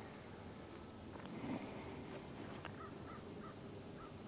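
Faint outdoor background with a short run of three faint bird calls, evenly spaced, a little before the end.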